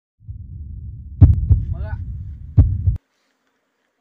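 Heartbeat-like sound effect: two pairs of deep thumps over a low rumble, with a short pitched vocal-like sound between them, cutting off suddenly about three seconds in.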